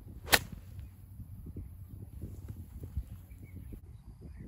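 A golf iron swung down through thick rough, striking the ball with one sharp crack about a third of a second in.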